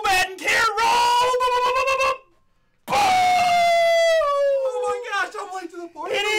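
A man screaming and yelling in excitement, his voice pitched very high; after a brief silence a long cry slides steadily downward in pitch.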